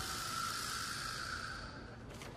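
A soft hiss that fades away over about a second and a half.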